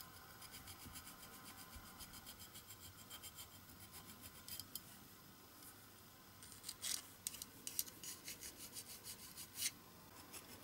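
Small hand file rasping against the edge of a die-cast metal toy car body in quick, short, faint strokes. A few stronger strokes come in the second half.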